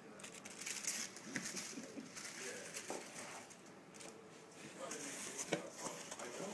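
Plastic and bubble-wrap packing crinkling and rustling as hands dig through it, with many small sharp clicks.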